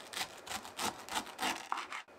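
Kitchen knife sawing through the fibrous core of a fresh pineapple quarter on a wooden cutting board: a quick run of short rasping strokes, about four a second.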